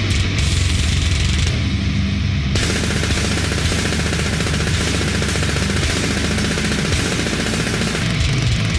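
Fast heavy-metal drumming on a drum kit: rapid, machine-gun-like kick-drum strokes under a dense wash of cymbals, with the cymbals coming in fuller about two and a half seconds in.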